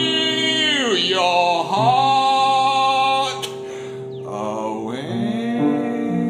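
A man singing to his own piano accompaniment, holding long notes. His voice slides down in pitch about a second in, and the music grows quieter a little past the middle before swelling again.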